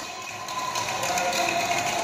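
Rustling handling noise close to the phone's microphone, a hiss that grows slightly louder over the two seconds, with no trombone note sounding.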